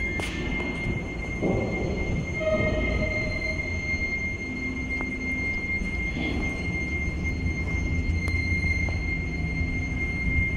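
Freight elevator car traveling in its shaft: a steady low rumble with a constant high-pitched whine, and a single sharp click right at the start.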